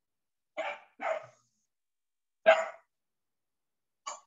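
A dog barking three times in short, sharp barks, two close together and a louder one about two and a half seconds in, picked up over a video call's microphone.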